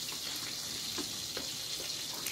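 Steady hiss of food sizzling in a pan, with a couple of faint clicks of a fork against a bowl of beaten eggs.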